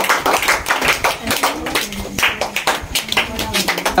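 A small group of people clapping their hands, a dense, irregular patter of claps that carries on throughout, as a child is handed a gift.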